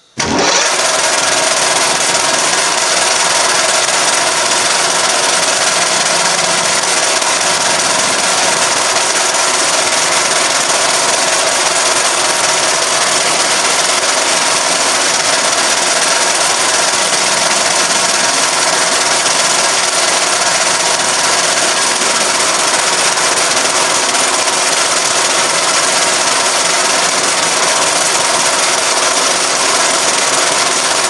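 An old metal-turning lathe switched on, coming up to full noise within half a second, then running loud and steady as the tool takes a light finishing cut on a metal part.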